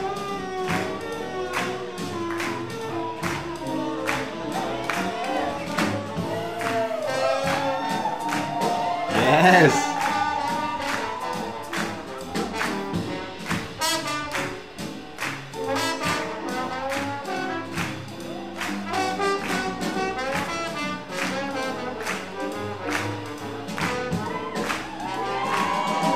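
Live swing jazz band playing at a slow tempo, with trumpet, trombone and saxophone over a steady beat. There is one loud swell about nine and a half seconds in.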